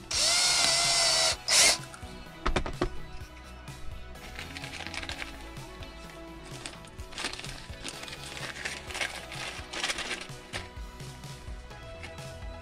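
Cordless drill spinning up and drilling into a fan's mounting bracket for just over a second, its motor pitch rising slightly as it starts, then a second short burst of drilling. A few sharp clicks follow, over background music.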